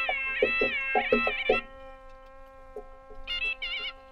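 Nadaswaram playing an ornamented melody in raga Sankarabharanam, its notes sliding and wavering, over a steady drone with regular drum strokes. About a second and a half in, the reed melody stops and only the drone is left. Near the end the melody comes back in.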